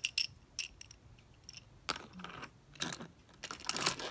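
Small plastic toy pieces clicking and rattling as they are handled and set down on a plastic playset, with scattered light taps and a couple of short rustling clusters.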